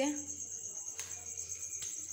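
Crickets chirping in a steady, evenly pulsing high trill, over a low steady hum, with two faint clicks, one about a second in and one near the end.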